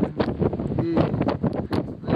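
Gusty mountain wind buffeting the microphone in blowing snow, loud and uneven. A voice speaks briefly about a second in.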